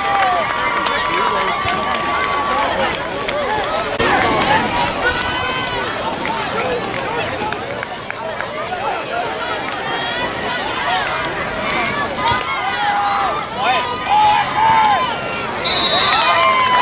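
Spectators and young players shouting and cheering, with many high-pitched voices overlapping and a long held shout in the first couple of seconds.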